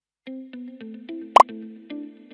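A light music jingle of short, quick notes starts a quarter second in. Over it comes one short pop sound effect, rising in pitch, about halfway through; it is the loudest sound.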